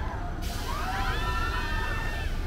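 Several riders on a swinging pendulum ride screaming together: their cries start about half a second in, rise in pitch and are held for over a second. A steady hiss comes in at the same moment.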